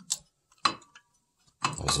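Two light taps, about half a second apart, on a Porsche 930 brake caliper to check that the freshly fitted brake pads are seated.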